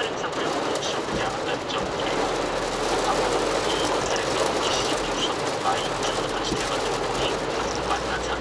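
Heavy rain beating on a car's roof and windshield, with tyres on the wet road, heard from inside the cabin as a dense, steady patter.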